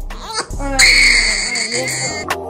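A one-month-old baby crying: a rising wail, then a loud, high-pitched cry held for about a second, over background hip hop music with a steady beat.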